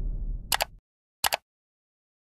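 Two mouse-click sound effects about three quarters of a second apart, each a quick double tick like a button press and release. A low rumble fades out under the first one.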